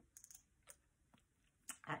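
A few faint mouth clicks and lip smacks while tasting a dropperful of herbal tincture held under the tongue: a small cluster just after the start, then single clicks spaced through the rest.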